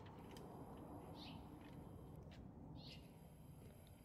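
Near silence: a faint background hush with two short, soft high chirps, one about a second in and one near three seconds, like small birds calling in the distance.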